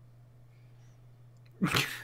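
A man bursting into a sudden short laugh, a sharp breathy exhale through the nose about a second and a half in, fading quickly.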